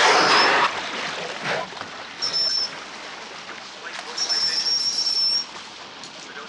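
Water splashing as a beluga surfaces, then beluga whistles: a short high steady whistle about two seconds in and a longer one of over a second near the end.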